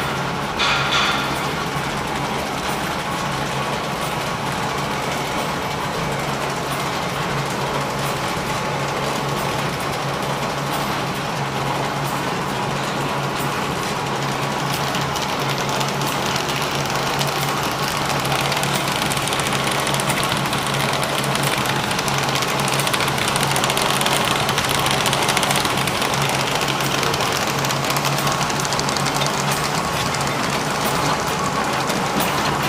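A paper-converting machine running steadily: its rollers, gears and paper web give a continuous mechanical rattle over a constant low hum. There is a brief louder clatter about a second in, and the noise grows a little louder in the second half.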